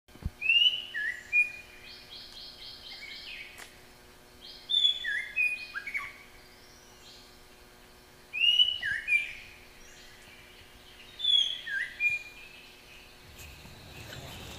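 A songbird singing the same short phrase four times, a few seconds apart: a couple of whistled slurs, then a quick run of higher notes. A faint steady hum lies beneath.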